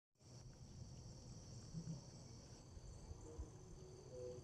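Near silence, with a faint, steady, high-pitched chorus of insects.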